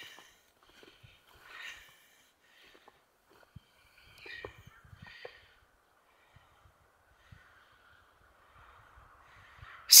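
Mostly quiet outdoor air with a few faint, short breath-like sounds a couple of seconds apart and some soft low bumps.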